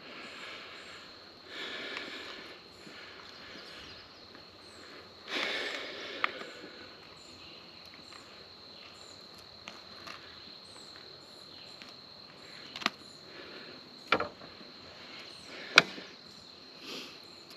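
A steady high-pitched insect drone, with rustling and a few sharp clicks and knocks as a freshly caught largemouth bass is handled and unhooked.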